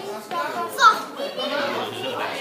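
Babble of many voices, children's among them, with one child's high-pitched shout just under a second in.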